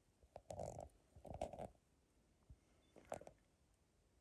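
Near silence, broken by a few faint, short rustling noises in the first second and a half and a brief cluster of soft clicks about three seconds in.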